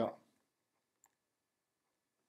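A man's spoken word trails off at the start, followed by near silence with one faint, short click about a second in.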